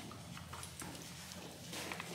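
A horse's hooves shifting on the stable floor: a few faint, short knocks, two close together near the end.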